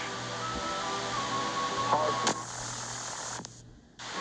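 Background music of steady held tones under narration, with one short spoken word about two seconds in; the music drops away briefly just before the end.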